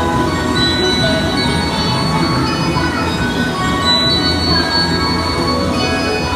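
Ride music with long sustained notes playing over a steady low rumble from the moving boat ride.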